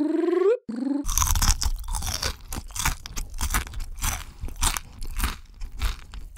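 Close-up ASMR eating sound effect: crunchy bites and chewing, many irregular crackles with soft low thumps, starting about a second in. Before it, a short rising cartoon vocal sound.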